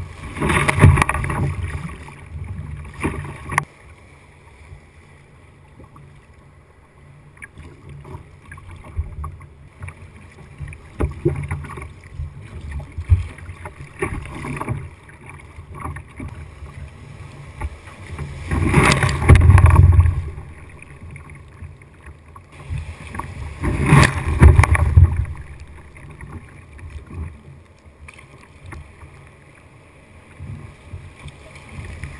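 Water washing and splashing against a sit-on-top sea kayak's bow as it rides through breaking surf, with a low rush of water throughout. It gets loud three times, in surges lasting a second or two: once right at the start and twice in the second half, as waves break over the bow.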